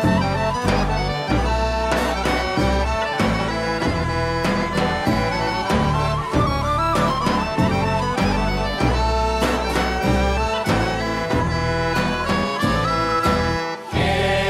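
Bulgarian folk band playing an instrumental tune: a kaba gaida bagpipe with its steady drone, accordion and a small wooden pipe, over regular beats of a tapan bass drum.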